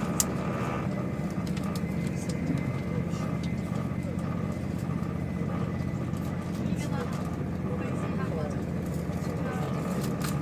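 Steady rumble of a moving vehicle heard from inside the cabin, with a faint steady hum above it.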